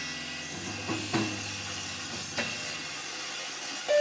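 A quiet passage of free-improvised experimental music: a hissing noise texture over a low drone that thins out, broken by a few sharp struck hits. A loud sustained note enters just before the end.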